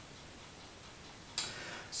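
A quiet pause in a man's reading aloud: faint room tone, then a quick sharp breath in about one and a half seconds in, just before he speaks again.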